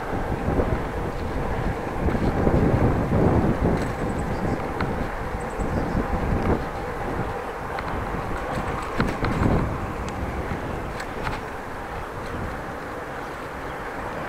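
Wind rushing over an action camera's microphone while riding a bicycle, with steady road and tyre rumble that rises and falls in uneven surges, and a few faint clicks.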